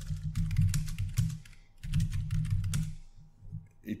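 Typing on a computer keyboard: two runs of quick keystrokes with a short pause between, stopping near three seconds in.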